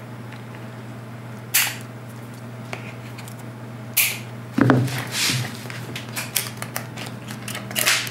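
Two sharp snips about two and a half seconds apart from a pair of cutters, then a thump and a run of small clicks and rustles as the pieces are handled.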